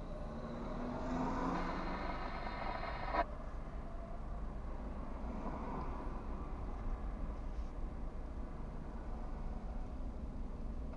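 A passing car's engine heard from inside a stopped car: it grows louder over the first three seconds and cuts off suddenly. A steady low rumble carries on underneath.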